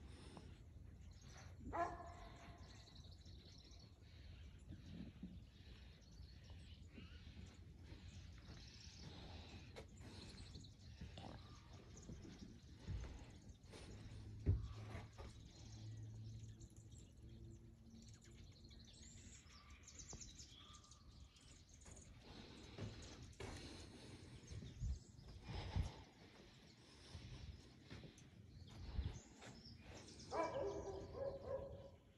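Quiet outdoor ambience with faint, scattered bird chirps and a few soft knocks.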